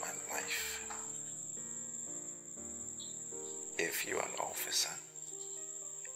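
Film-score background music of held synth chords that change every second or so, over a steady high-pitched tone that sounds like an insect's chirr.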